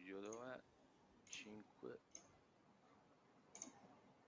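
Near silence: a man's voice trails off in a drawn-out hesitant "ehh" at the start, then a couple of faint murmured syllables, with three short faint clicks spread through the pause.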